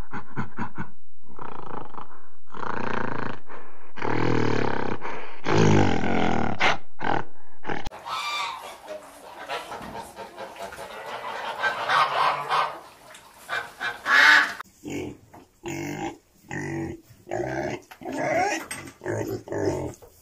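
A gorilla's rhythmic panting grunts, repeated steadily. About eight seconds in these give way to greylag geese honking and calling over each other, with short grunting calls near the end.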